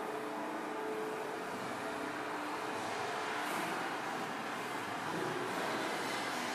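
A quiet, steady wash of noise with faint held tones underneath in the first half.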